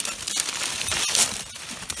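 Dry fallen leaves crackling and rustling as someone moves through the leaf litter on the forest floor, with a somewhat louder crunch about a second in.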